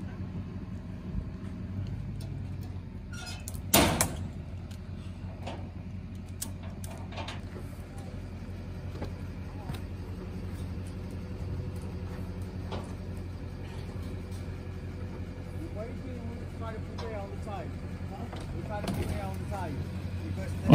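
A vehicle engine idling with a steady low hum, broken by one sharp knock about four seconds in.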